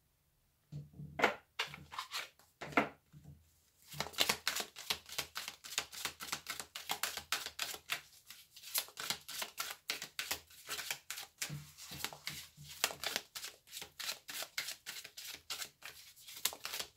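A deck of oracle cards being shuffled by hand: a few separate taps in the first few seconds, then a fast, even run of card clicks from about four seconds in.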